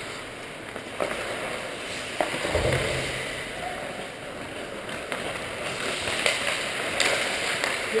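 Ice hockey game heard from the players' bench in an indoor rink: a steady hiss of skates on ice with a few sharp stick-and-puck clacks and faint voices around the rink.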